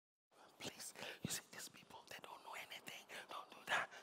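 A man whispering into another man's ear: quiet, breathy speech without voice.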